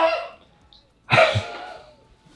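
Hushed, breathy whispering and stifled laughter from a man, in two short bursts: one at the start and a longer one about a second in.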